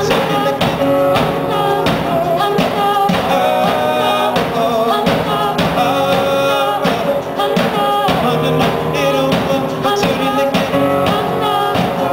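Live band music: several voices singing together over electric guitar, keyboard, bass and a drum kit keeping a steady beat.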